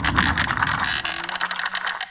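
A quick, even run of ratchet-like clicking, a rattle with a faint low steady tone under it near the end.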